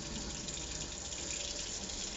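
Kitchen faucet running a steady stream of cool water into a stainless steel sink while a fish skin is rinsed under it by hand.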